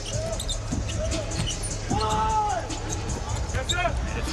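Basketball being dribbled on a hardwood court, with short high squeaks from players' shoes and a steady arena hum underneath.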